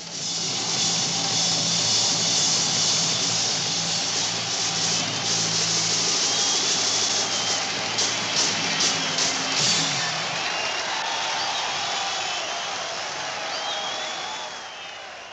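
Loud live rock music from a festival stage, a dense wash of band and cymbals. After about ten seconds the band fades and crowd noise with high wavering voices carries on.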